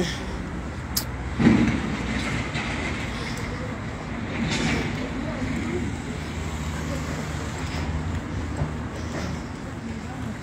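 Street traffic noise: a steady low rumble of passing vehicles, with a sharp click about a second in and a louder thump just after.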